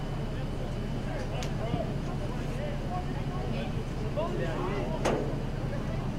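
Players' distant shouts and calls across an outdoor soccer pitch over a steady low rumble, with a sharp knock about five seconds in.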